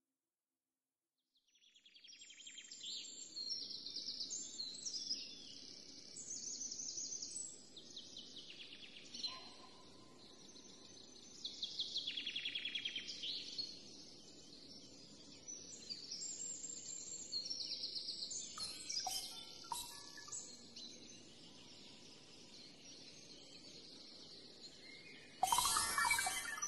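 Faint birdsong: five or so bursts of rapid, high chirping trills, some falling in pitch, separated by short pauses over a low hiss. It stops about 21 seconds in, and a louder sound starts just before the end.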